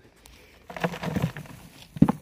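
Loose soil and straw pouring out of a fabric grow bag into a plastic bucket, with a short burst of rustling and pattering just under a second in.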